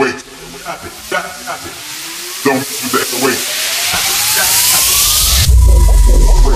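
Build-up in a vixa club mix: a hiss riser and a synth sweep climb steadily in pitch over several seconds under a few short stabs, then the track drops into loud heavy bass about five and a half seconds in.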